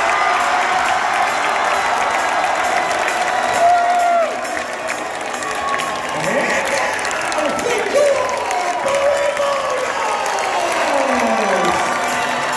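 A crowd in a gymnasium applauding and cheering, the clapping steady throughout, with voices calling out over it.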